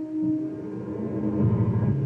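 Radio station music from an AM broadcast: a short sounder of sustained tones, with a fuller, lower layer coming in about a second in. It is the bridge into the station's top-of-hour newscast.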